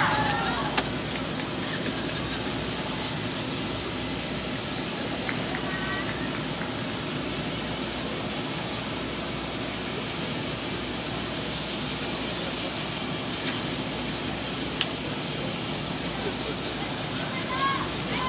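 Outdoor sports-venue ambience: a steady background wash with faint, distant voices now and then, and one small click about fifteen seconds in.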